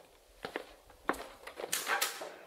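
A few soft footsteps at an uneven pace, ending in a longer scuffing step.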